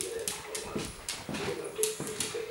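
A small dog sniffing along the floor in quick, short sniffs, about two or three a second, with a thin, wavering whimper running underneath.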